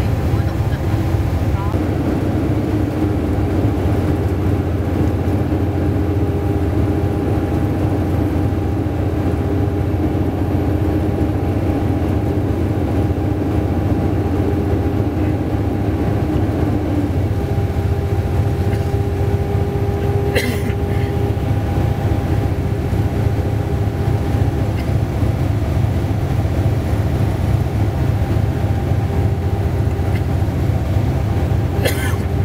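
Steady low drone of a vehicle cruising at highway speed, heard from inside the cabin, with one brief sharp click about two-thirds of the way through.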